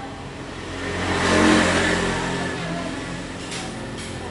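A motor vehicle's engine passing nearby, swelling to a peak about a second and a half in and then fading, over a steady low engine hum.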